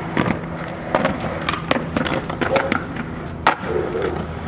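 Skateboard wheels rolling on concrete, with a series of sharp clacks from the board hitting the ground; the loudest clack comes about three and a half seconds in.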